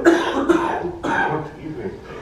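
A man coughing into his hand: three coughs about half a second apart, the first the loudest.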